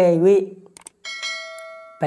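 After a brief bit of a man's speech, a click and then a bell-like ding that rings out and fades over about a second: the sound effect of a subscribe-button animation.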